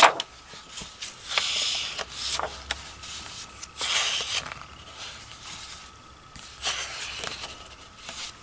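Sheets of paper rustling and sliding as they are handled and laid down, in several short bursts.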